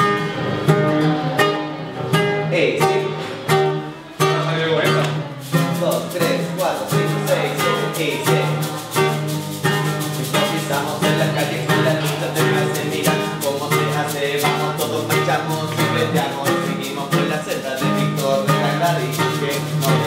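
Acoustic guitar played live: a few loose chords, then from about five seconds in a quick, steady strummed rhythm.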